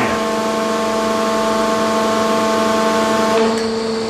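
Lewmar hydraulic captive winch running under a load of about nine tons as it pays out line. It makes a steady mechanical hum with several held tones, and the tone changes a little near the end.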